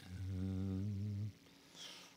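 A man's low, steady closed-mouth hum ("mmm") held for a little over a second and then stopping, a thinking sound made while searching for something.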